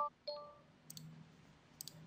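Computer mouse clicking, faint sharp clicks about a second in and again near the end, over quiet room tone. A brief faint tone sounds near the start.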